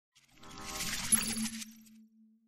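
Logo-reveal sound effect: a swelling hiss builds and peaks about a second in with a sharp, bright metallic ping. It then falls away to a single low tone that fades out slowly.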